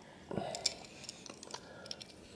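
A few faint, small metallic clicks as a silver-gilt musical locket is turned over and handled in cotton-gloved fingers.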